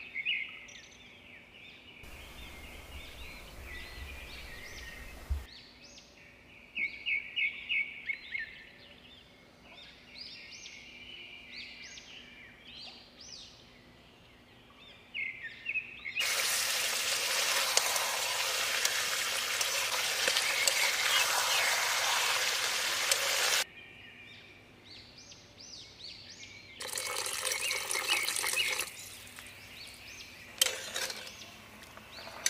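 Small birds chirping repeatedly. A loud, even hiss comes in about sixteen seconds in and cuts off about seven seconds later, with a shorter burst near the end; there is also a low rumble a few seconds in.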